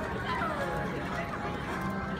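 Spectators' voices and calls, with pitch glides in the first half, over steady background music in a crowded indoor arena.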